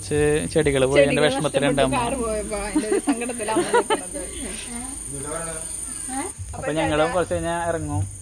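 People's voices calling and talking, with a steady high chirring of night insects, likely crickets, running underneath.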